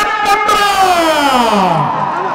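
A man's long, drawn-out shouted call through a handheld microphone and PA: one held note whose pitch slides steadily down for nearly two seconds.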